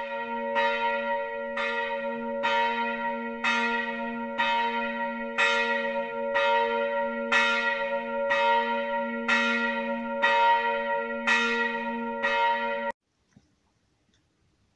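A single church bell tolling the same note about once a second, with a steady low hum ringing on under the strikes. It cuts off suddenly about a second before the end.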